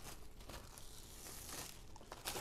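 Faint crinkling of plastic wrap being handled and pulled back over pastry dough.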